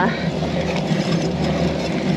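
Steady wind noise on a bike-mounted camera's microphone while riding, an even rush with no separate knocks or clicks.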